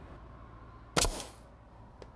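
Pneumatic finish nailer firing once: a single sharp snap about a second in, driving a 2½-inch finish nail through the door jamb and shims into the framing.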